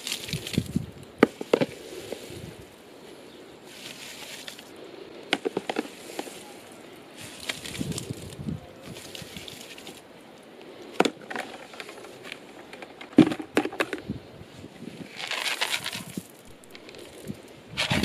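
Plastic scoop digging wet, reconstituted water-retaining gel granules out of a plastic bucket and tipping them onto compost in other plastic buckets, with scraping and sharp knocks of the scoop against the bucket rims. Near the end, dry seaweed fertiliser pellets are scooped and scattered with a brief rattle.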